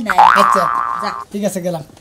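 Cartoon-style 'boing' comedy sound effect: a springy, wavering tone that jumps up in pitch and lasts about a second, over voices.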